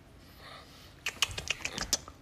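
Quiet at first, then from about a second in a quick run of sharp clicks and smacks, several a second.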